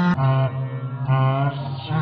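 A voice singing or chanting long held notes, low in pitch, in short spliced pieces that jump to a new note about every half second, with an abrupt cut just after the start.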